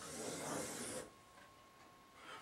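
Marker drawing a long curved stroke on a whiteboard: a faint, scratchy hiss that stops abruptly about a second in.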